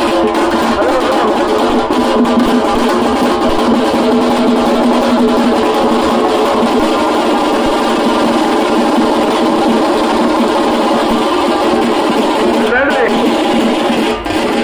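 Loud music mixed with the voices of a large, dense crowd, running steadily throughout.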